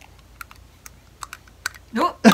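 A small plastic book light being handled and mouthed by a baby: a run of about six small, sharp clicks and taps, one of them its switch turning the light on near the end.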